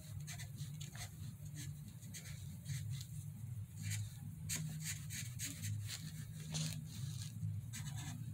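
Broad-tip felt marker stroking back and forth across paper in short, irregular strokes, over a steady low hum.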